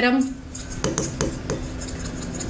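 Writing on a blackboard: a handful of short, sharp taps and scrapes about a second in, as a word is written.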